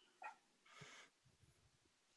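Near silence, with a faint short tick about a quarter second in and a faint brief breath-like noise just under a second in.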